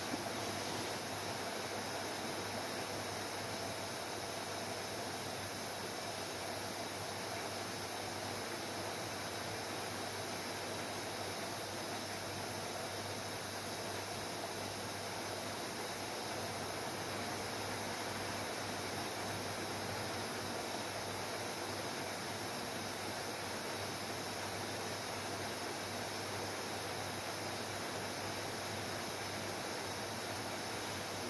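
Heavy rain bucketing down on a roof: a steady, even hiss.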